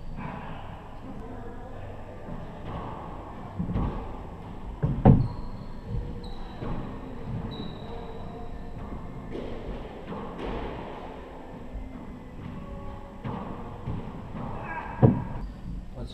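A handball rally in an enclosed four-wall court: sharp smacks of the ball off hands, walls and floor, echoing in the hall. The loudest comes about five seconds in and another near the end, with lighter knocks between and short high squeaks of sneakers on the hardwood floor.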